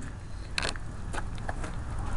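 A few light clicks and knocks of sheet metal as the top panel of a small stackable clothes dryer is lifted off, the loudest about half a second in, over a low steady hum.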